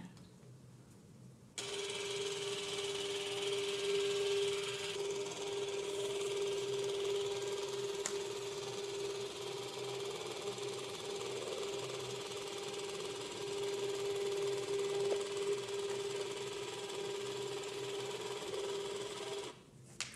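The printer of a seca MyCardioPad ECG machine printing out a 12-lead ECG trace: a steady mechanical hum with a hiss of feeding paper. It starts suddenly about a second and a half in and stops just before the end.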